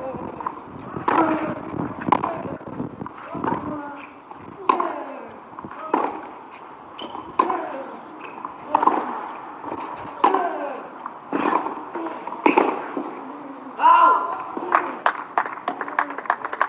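Tennis rally on a clay court: the ball is struck by the rackets about every second and a half, each hit with a short grunt from the player. A louder vocal shout comes near the end as the point finishes.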